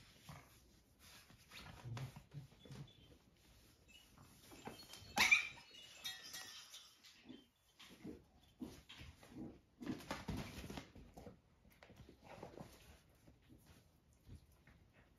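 A mother dog and her six-week-old puppies playing: scuffling and short dog noises, with one loud high-pitched squeal about five seconds in.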